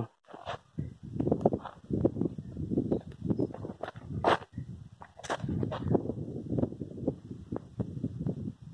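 Footsteps and bean plants brushing and rustling against someone walking through a bean field: an irregular scuffing with a few sharp clicks.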